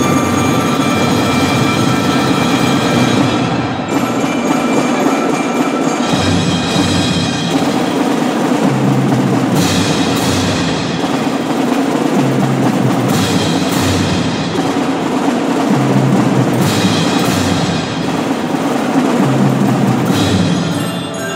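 Percussion ensemble playing: marimba and other mallet keyboard instruments ringing over drums, with several sharp accented hits in the second half.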